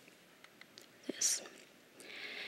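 A pause in a lecture: quiet room tone over the lectern microphone, with one short breath taken about a second in.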